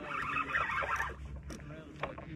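Fishing reel being wound in while a fish is played, a busy gear whir that is loudest in the first second and then eases off, with a sharp click about one and a half seconds in.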